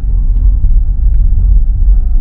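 Steady low rumble of a car driving along a street, heard from inside the cabin, with road and engine noise heavy on the microphone.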